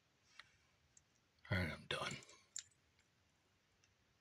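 A brief murmured utterance from a person about halfway through, with a few faint sharp clicks before and after it.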